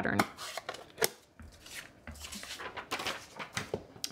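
Handling noise of paper-crafting supplies on a desk: a plastic stamp ink pad being handled and a sheet of cardstock being moved, giving scattered light clicks and paper rustles.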